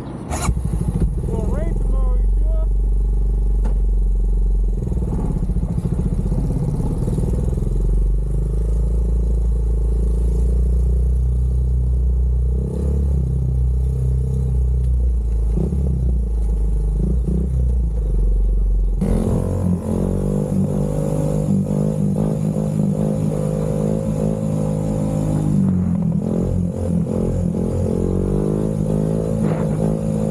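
ATV engine running while the quad is ridden along a street, with a sudden change in the sound about two-thirds of the way through.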